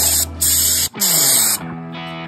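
Graco Magnum X5 airless sprayer spraying stain in three short trigger pulls, each a hiss that starts and stops abruptly. A low steady hum cuts out a little under halfway through.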